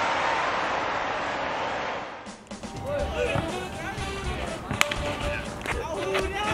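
A steady rushing noise fades out about two seconds in. It gives way to open-air ballfield sound with distant voices calling and background music, and a couple of sharp knocks near the end.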